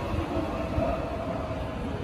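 JR 209-series electric commuter train standing at the platform, its onboard equipment running with a steady hum and rumble in the station hall.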